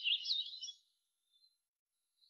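A small songbird singing a quick run of warbling, high chirps that stops under a second in.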